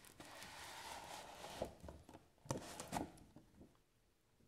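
Cardboard slipcover being slid off a Blu-ray box set: a soft scraping of cardboard on cardboard for about a second and a half, then a few light knocks as the box is handled and set down on a wooden table.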